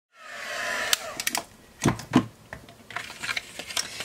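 Craft heat tool's fan running and then winding down with a falling whine, followed by several sharp knocks and taps as the tool is set down and the card panels are handled.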